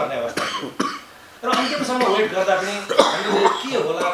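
A man coughing several times into his fist within the first second. After a short pause, about two and a half seconds of his voice follow.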